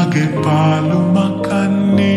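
A Sinhala pop song played slowed down with heavy reverb: a low, wavering melody line over held notes.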